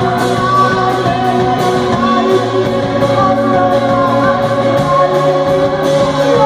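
Live rock band playing loud: electric guitars, drum kit with regular cymbal strikes, and bass notes that change a couple of times, in a room that adds reverberation.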